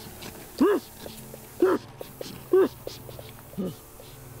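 A man's short whimpering cries, four of them about a second apart, each rising and falling in pitch, over a low steady hum.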